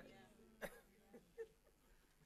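Near silence: faint room tone of a church hall, with a brief faint click about half a second in and a smaller one a little later.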